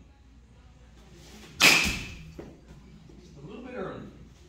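Bat hitting a pitched softball: one sharp crack about one and a half seconds in that trails off over half a second. A lighter knock follows just under a second later.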